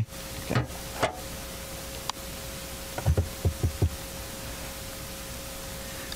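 A live microphone being checked: about five quick, low thumps a little after three seconds in, as the mic is tapped or handled, over a steady hiss and a faint steady tone from the PA system.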